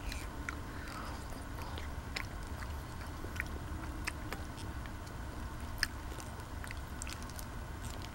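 Close-up mouth sounds of eating soft semolina porridge with cherries: chewing with scattered small wet clicks.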